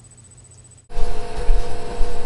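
A low quiet hum, then about a second in a loud rumbling noise with a steady hum cuts in suddenly.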